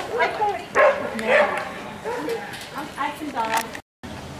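Dogs barking and yipping over people's voices, with the sound cut off abruptly near the end.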